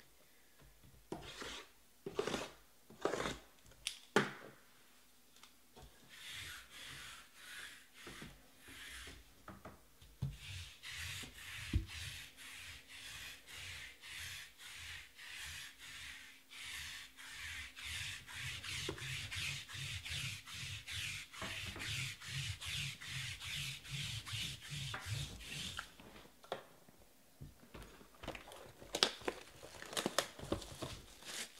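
A lint roller rolled back and forth over a table mat: a rhythmic sticky rasping of about two to three strokes a second. It starts about six seconds in, grows steadier and louder, and stops a few seconds before the end. A few sharp clicks come before it, and a sharp rustle of plastic near the end.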